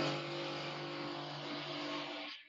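A steady mechanical noise, a low hum under a loud hiss, holding at one level throughout.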